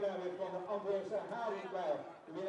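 A man's voice talking steadily, the words not made out.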